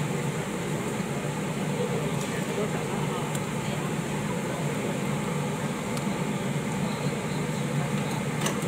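Busy street-stall ambience: indistinct background chatter over a constant low mechanical hum, with a few faint clicks.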